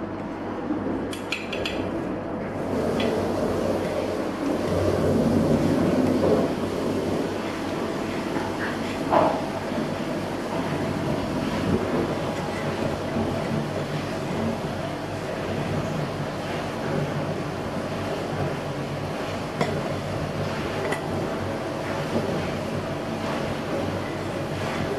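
A metal spoon stirring thick mung bean soup in a stainless steel pot, scraping through the soup and now and then clinking against the pot, over a steady hiss.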